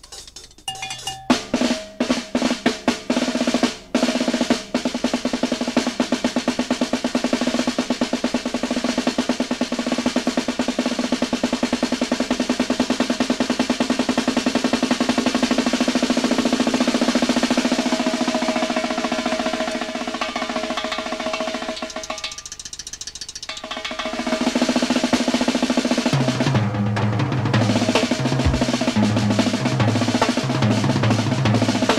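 Instrumental passage of early-1970s British blues-rock led by drums: a fast, rolling snare pattern over held notes, with a brief drop in level past the two-thirds mark and stepping low bass notes coming in near the end.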